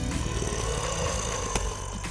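Outro sound effect: a low rumble with a tone that rises and then falls, and a sharp click about one and a half seconds in.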